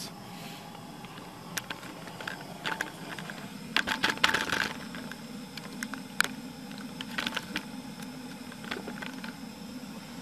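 Handling noise as a camera is moved and set in place: scattered light clicks and rustles, thickest about four seconds in, over a steady low hum.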